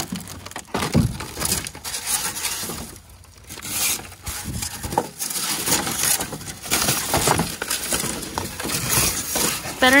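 German shepherd digging with its front paws in a plastic kiddie pool full of styrofoam scraps: claws scraping the plastic floor while the foam pieces crunch, squeak and knock together in a steady, irregular run of crackles.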